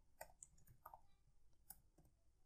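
Faint, scattered clicks of keys on a computer keyboard: a handful of keystrokes in two seconds, with near silence between them.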